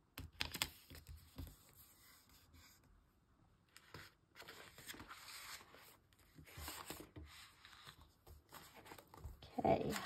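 A paper sticker peeled off its glossy backing with a few sharp crackles, then glossy sticker-album pages turned and rustling in several longer swishes.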